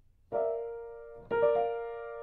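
Right-hand chords on a piano, two of them about a second apart, each ringing on and fading slowly under the sustain pedal, with a higher note joining just after the second.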